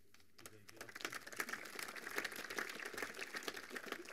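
Audience applause in a conference hall, rising about half a second in and dying away near the end.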